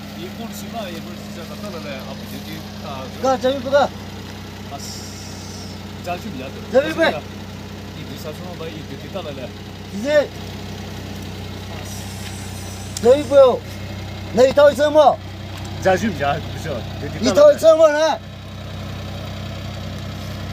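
A car engine idling with a steady low hum, under a heated spoken argument.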